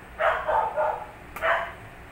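A dog barking, about four loud barks: three in quick succession early in the first second and one more about a second and a half in.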